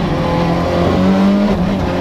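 Rally car engine heard from inside the cabin, running hard under load; its pitch rises slightly, then drops about a second and a half in and holds steady.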